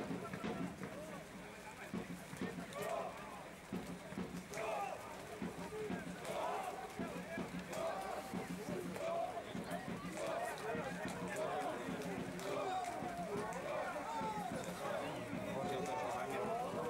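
Voices calling and shouting across an open football pitch, repeated short calls with no clear words, over a steady outdoor background noise; they grow more frequent a few seconds in and keep on.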